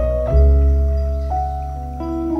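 Slow, relaxing instrumental piano music: held notes over a deep bass, with a new chord about a third of a second in and a higher note entering just past a second.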